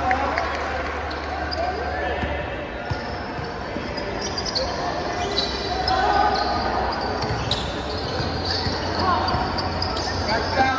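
A basketball being dribbled on a hard tiled floor during a pickup game, its bounces sounding as a string of sharp knocks, with players and onlookers talking in the background.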